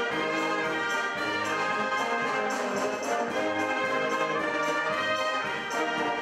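Brass band music: sustained chords changing every second or so at an even volume.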